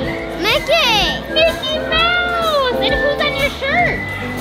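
High-pitched children's voices calling and exclaiming, rising and falling in pitch, over steady background music.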